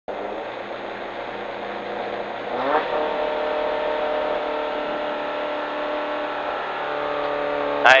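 Renault Clio Ragnotti rally car's four-cylinder engine, heard from inside the cabin, running steadily, then blipped up in pitch about three seconds in and held at raised revs, ready for the launch.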